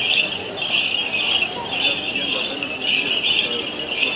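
Loud chorus of summer insects chirring with a fast, even pulsing rhythm, over a faint murmur of a walking crowd.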